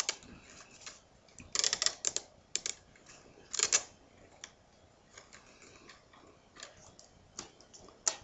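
Round reed strands clicking and rustling against one another and the woven basket as they are handled, in irregular bursts: a cluster of clicks about one and a half to two seconds in, another near four seconds, then scattered faint ticks.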